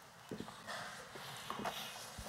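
A few soft knocks and a low thump amid faint rustling.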